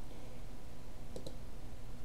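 A few quick, faint computer mouse clicks about a second in, opening a menu on screen, over low room noise.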